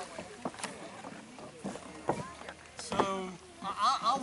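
Lake water splashing and sloshing around people wading waist-deep, with short scattered voices and a louder voice just before the end.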